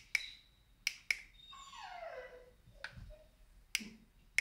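Corded handheld barcode scanner being handled and triggered: about five sharp isolated clicks spread over four seconds, with a brief high beep at the very start and a faint tone sliding down in pitch around the middle.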